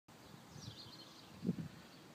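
Outdoor ambience with a bird chirping faintly in the first second, then a brief low thump about one and a half seconds in.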